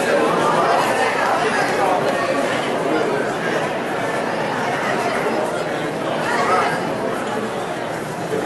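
Many people talking at once in a large hall: a steady hubbub of crowd chatter with no single voice standing out.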